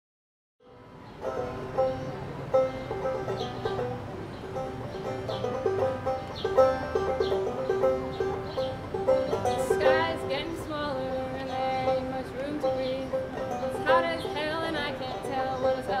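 Open-back banjo picking with a cello, an acoustic folk instrumental intro that starts about half a second in after silence.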